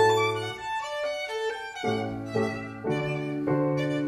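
Violin playing a phrase of changing notes over piano accompaniment.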